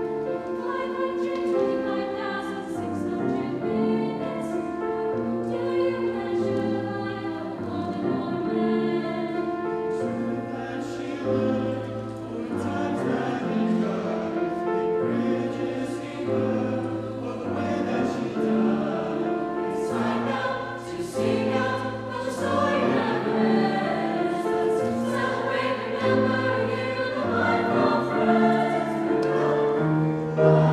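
Mixed high school choir singing a sustained choral piece with grand piano accompaniment.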